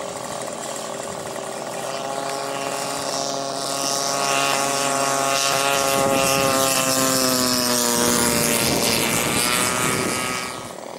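Radio-controlled model airplane's engine and propeller running steadily in flight. The sound grows louder as the plane passes close, and its pitch drops about three-quarters of the way through as it goes by.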